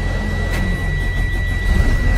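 School bus engine idling while the air brake pedal is pumped to bleed down the air system, with a couple of short air hisses, under a steady high-pitched warning tone.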